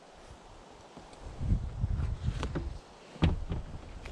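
Low thumps and handling rumble, then a sharp click about three seconds in as a car's rear passenger door is unlatched and opened.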